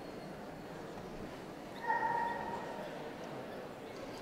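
A dog gives one short, high whine about two seconds in, lasting about half a second, over the steady murmur of a crowded hall.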